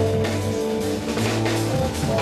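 Jazz quartet playing live: electric guitar over electric bass, keyboards and drum kit, with sustained bass notes and cymbal strokes.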